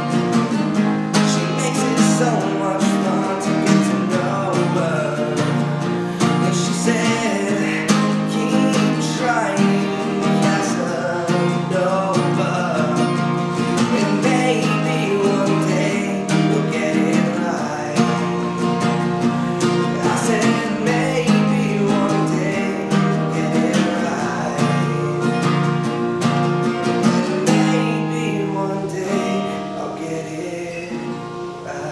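Acoustic guitar strummed in a steady rhythm, the chords changing every couple of seconds and the playing easing off slightly near the end.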